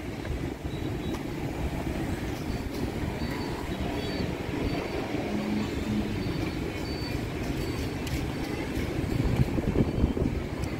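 Street traffic noise: a steady low rumble of passing motorbikes, with a few faint brief higher tones over it.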